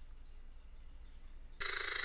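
Faint room tone, then about one and a half seconds in a sudden loud burst of buzzing electronic static: a glitch-style transition sound effect between clips.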